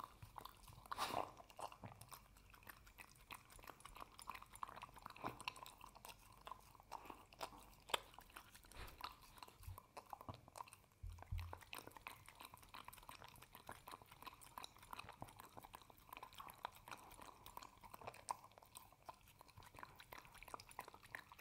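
A small dog lapping and licking thick kibble-and-oatmeal mush from a glass mug: quiet, irregular wet smacks and clicks. A slightly louder one comes about a second in and another near eight seconds.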